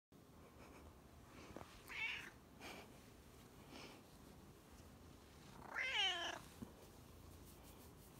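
Domestic cat meowing: a short meow about two seconds in, a couple of faint calls after it, then a louder, longer meow that falls in pitch about six seconds in.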